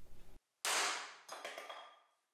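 A hammer strikes a steel center punch held on a steel bar, a sharp metallic hit about half a second in that rings away, then a fainter second tap. This punches a dimple at the marked spot so the drill bit has a place to start and won't walk.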